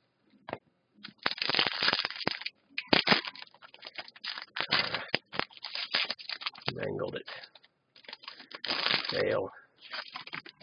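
Foil trading-card pack wrapper being torn open and crinkled by hand, in repeated bursts of crackling from about a second in until near the end.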